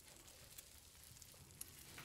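Near silence, with faint sizzling from bacon frying in a pan and a few light crackles.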